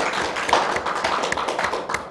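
Sheets of paper being handled and shuffled: a continuous rustle with many sharp crackles and taps.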